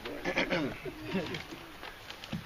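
Indistinct chatter of several voices talking at once, with no clear words.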